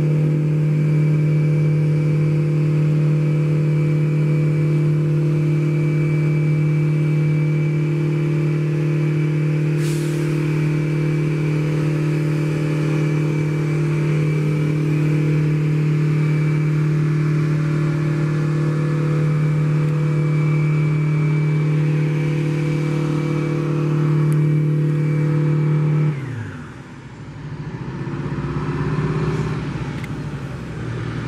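The twin turboprop engines and propellers of a Bombardier DHC-8 Q200 running at taxi power with a steady, even drone and a thin high whine above it. Near the end the drone falls sharply in pitch and level, then a lower, wavering drone comes back.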